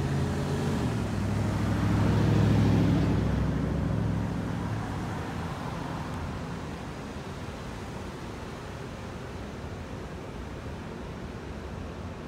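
A car passing close by on the street, its engine and tyre noise growing to its loudest two to three seconds in and then fading away, leaving a steady hum of city traffic.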